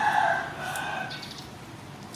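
A rooster crowing: one long held call that tails off just past the first second.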